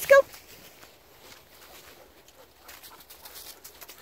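Faint, irregular crunching and rustling of footsteps through dry fallen leaves.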